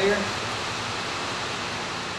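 Steady, even background hiss with no distinct mechanical sounds; the hand adjustment of the rocker-arm set screw makes no sound that stands out.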